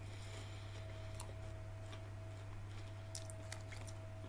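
A few faint clicks of someone chewing a potato crisp, mostly about three seconds in, over a steady low electrical hum in a quiet room.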